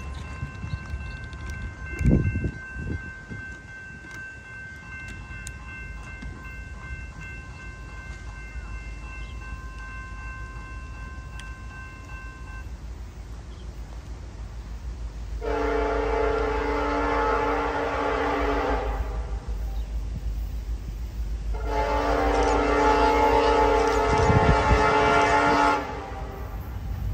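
A grade-crossing bell rings steadily for the first dozen seconds, with a thump about two seconds in. Then the Nathan K5LLA five-chime air horn on an approaching Norfolk Southern locomotive sounds two long blasts for the crossing, each about three to four seconds, over the low rumble of the train.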